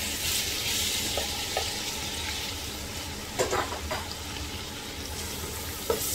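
Chopped tomatoes sizzling in hot oil with fried onions, freshly added to the pot and being stirred with a spatula. The sizzle is loudest at first and then eases, with a few light taps of the spatula against the pot.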